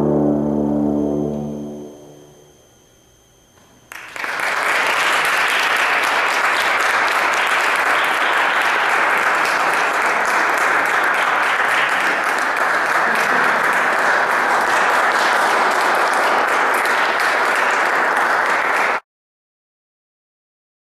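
A brass choir's final chord dies away over about two seconds. After a brief hush, an audience applauds steadily, and the sound cuts off suddenly near the end.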